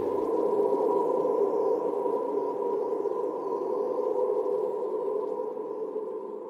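Ambient outro music: a steady held drone with faint wavering high glides above it.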